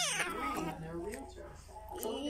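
A baby vocalising: a falling squeal at the start, then softer wavering coos that fade toward the end.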